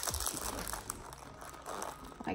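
Glossy sticker paper and the candy bag's crinkly wrapper rustling and scraping in a run of small crackles as a crease is pressed into the paper by hand.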